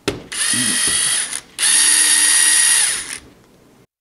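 Cordless DeWalt drill/driver running in two bursts, about a second and then about a second and a half, with a steady motor whine, driving a 2 mm hex key bit to back out countersunk socket head cap screws from a resin printer's vat frame.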